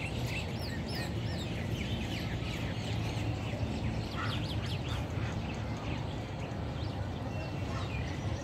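A flock of birds calling, many short rising-and-falling chirps overlapping one another, over a steady low rumble.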